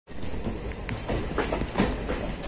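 Wheels of a moving express passenger train running on the rails, heard from the coach doorway: a steady rumble with irregular clattering knocks as the wheels cross rail joints and points.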